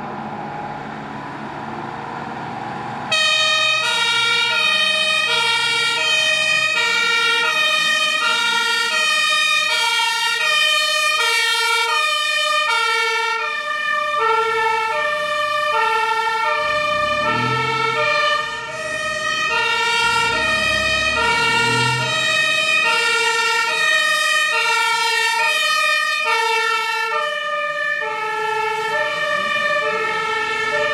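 German two-tone emergency siren (Martinshorn) on responding emergency vehicles, starting about three seconds in and switching between a high and a low note about once a second, with more than one horn overlapping. A truck engine's low rumble swells twice in the middle as the fire engine passes.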